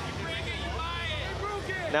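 A 30 lb shell-spinner combat robot's very heavy spinning shell running at speed, giving a steady, low, ominous rumble.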